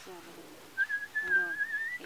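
A person whistling one thin, high held note that starts about a second in, breaks once briefly, then wavers slightly and rises a little at the end. A faint voice lies underneath.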